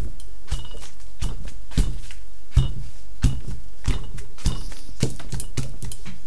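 Rubber stamps being dabbed on an ink pad and pressed by hand onto a padded car sunshade: a run of soft thumps and taps, about one every half second to second, over a steady low hum.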